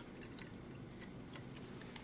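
Faint room tone with a few light, scattered clicks, like small items being handled.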